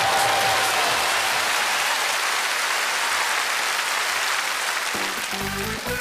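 Studio audience applauding, dying away over several seconds; a short piece of music comes in near the end.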